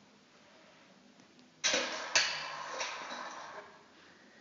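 Two sharp knocks about half a second apart, about one and a half seconds in, each followed by a hiss that fades away over about two seconds.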